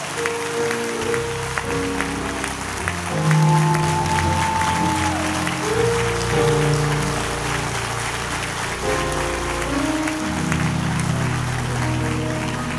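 Church organ playing sustained chords, changing every second or two, under a congregation's applause.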